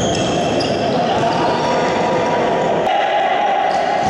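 Futsal game in a large indoor sports hall: the ball being kicked and bouncing on the court, and players calling out, all echoing in the hall. The sound changes abruptly about three seconds in.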